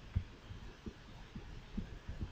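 Several faint, soft low thumps at irregular intervals over a low background hum, typical of a mouse being moved and handled on a desk near the microphone.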